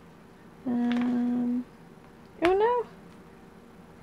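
Two short vocal calls: a level call about a second long, then a shorter one that rises and falls in pitch.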